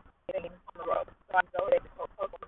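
A woman talking in short, unclear phrases; the audio is thin and cut off at the top, like sound over a phone line.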